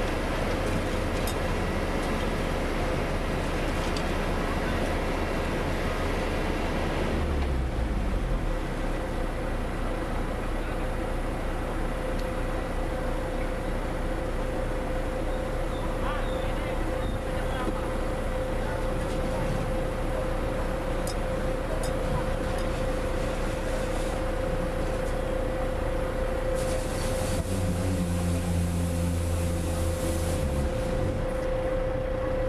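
Heavy diesel truck engine running steadily on a concrete pour site, with a steady whine above it. Its low note changes about seven seconds in, and a louder low drone comes in near the end.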